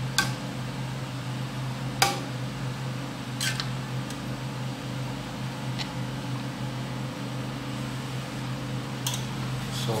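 A metal fork clinking against a cooking pot as fish pieces are moved in the stew: a few sharp clicks, the loudest about two seconds in. A steady low hum runs underneath.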